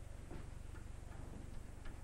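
Chalk writing on a blackboard: a few faint taps and scratches. Under them runs a steady low hum from an old film soundtrack.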